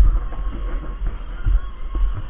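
Footsteps knocking on a walkway, heard through a heavy low rumble from a body-worn camera that is moving as its wearer walks.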